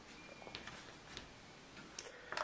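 A few faint ticks and taps, roughly every half second, as leather holsters holding handguns are handled and set down on a table.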